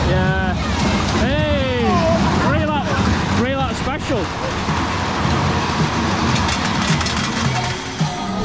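Excited whoops and shouts over the steady rumble of a small caterpillar kiddie roller coaster train running on its track, with fairground music in the background. The shouts fall in the first half, and the rumble and music fill the second half.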